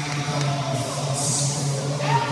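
Busy indoor pool noise during a butterfly race: a steady low hum, swimmers' splashing as bursts of hiss, and faint shouts from the deck.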